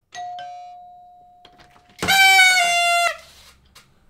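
A two-note doorbell chime that rings out and fades, then about two seconds in a loud, buzzy party horn blown for about a second, dropping in pitch halfway before it cuts off.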